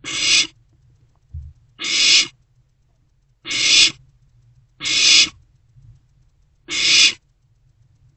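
Barn owl owlets giving five loud, rasping hiss calls in a row, each about half a second long, spaced every one and a half to two seconds: the hissing food-begging call of barn owl chicks.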